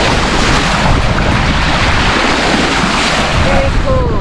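Bow wave rushing and splashing along the hull of a Jeanneau sailboat under way, a steady loud wash of water with heavy wind buffeting the microphone.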